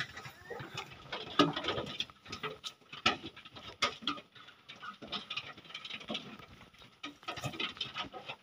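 Piglets moving about on a pickup truck's steel bed: irregular hoof taps and scuffs on the metal, with a few short animal noises.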